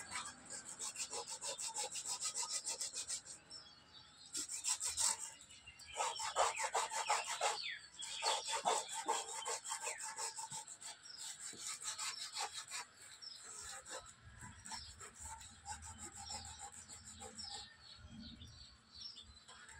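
Sandpaper rubbed back and forth by hand over a carved wooden panel: quick, scratchy strokes, several a second, with short pauses twice.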